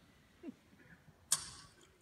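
A hushed audience in a large hall holding its breath for an announcement. The quiet is broken by a brief faint falling squeak about a quarter of the way in and a single sharp click about two-thirds of the way through.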